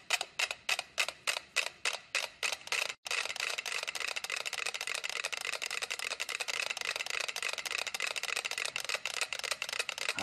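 Ten mechanical pendulum metronomes ticking, all set to the same tempo but not yet in step. At first there are distinct clicks about five a second. After a brief break about three seconds in, the ticks overlap into a dense, uneven clatter.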